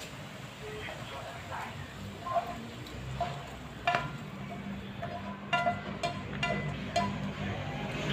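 Fried chorizo and sofrito being tipped and scraped from a frying pan into a pot of lentil broth. A few light knocks of the utensil against the pan come from about four seconds in, over a faint steady low hum.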